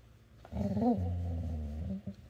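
A dog's low, drawn-out vocalization lasting about a second and a half, wavering up and down in pitch briefly near its start: the dog 'talking' back when prompted to say its name.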